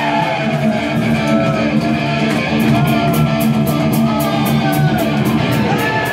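Live heavy metal band playing: an electric guitar lead with bending notes over a steady bass line, joined about halfway through by a cymbal ticking at about four beats a second.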